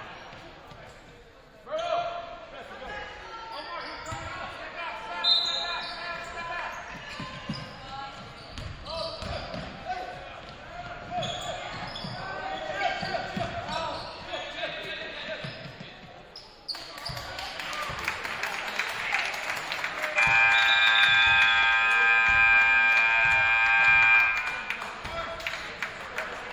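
Basketball bouncing on a gym floor amid crowd voices. About twenty seconds in, the scoreboard buzzer sounds one steady tone for about four seconds as the game clock runs out, marking the end of the period.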